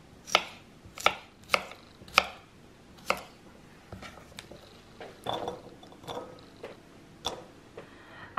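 Chef's knife slicing a cucumber on a wooden cutting board: five sharp knocks of the blade hitting the board, roughly one every half second, over the first three seconds. Then softer scattered taps and knocks as the cut slices are gathered up from the board by hand.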